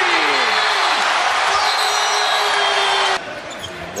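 Arena crowd cheering loudly for a made three-pointer, with a shout or two rising above it. The cheer cuts off suddenly about three seconds in, leaving quieter arena noise.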